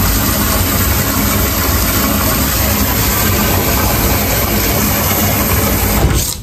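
Water running steadily from a wall-mounted bath spout into a birthing pool as it fills, with a steady low hum underneath.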